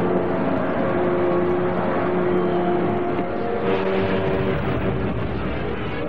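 Motorboat engine running steadily as the launch drives through choppy water, with the rush and splash of its wash.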